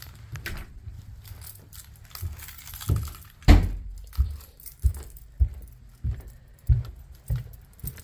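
Footsteps going down a flight of indoor stairs, heavy thuds about every 0.6 seconds, the first one the loudest, with lighter rattling and clicking between them.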